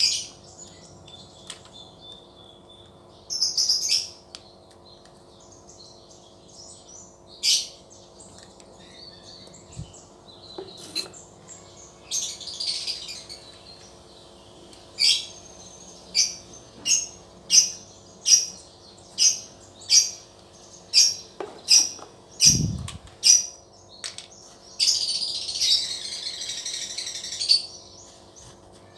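Small birds chirping in short, high chirps, scattered at first and then in a regular run of about one and a half chirps a second. A dull knock comes late on, and paper tissue rustles near the end.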